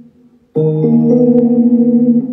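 Keyboard chords of a beat's melody playing back. The previous chord fades out, then a new held chord comes in about half a second in, and one of its notes changes shortly after.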